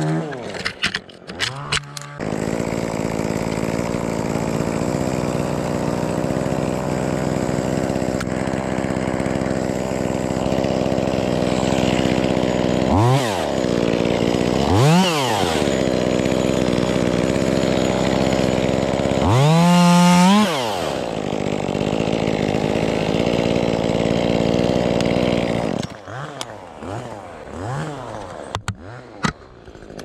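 Stihl chainsaw running while branches are cut from a Sitka spruce. After a brief lull with a few clicks it runs steadily from about two seconds in, with quick throttle blips around 13 and 15 seconds and a longer full-throttle run around 20 seconds. It drops to a low idle with small blips for the last few seconds.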